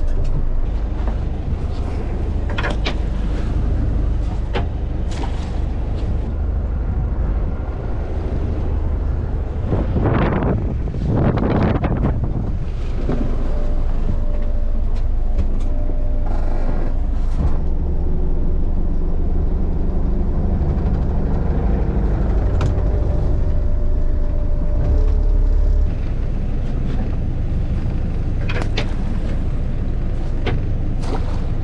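Small fishing boat under way: the engine running steadily with hull and water noise and occasional knocks and rattles in the wheelhouse. Two louder rushes of noise come around ten and eleven seconds in, and the engine level drops slightly near the end.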